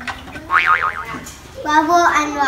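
A child's wordless vocal sound: a quick warbling wobble in pitch about half a second in, then a longer voiced sound with bending pitch near the end.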